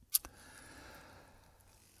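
A sharp click close to the clip-on microphone, then about a second of faint, soft rustling.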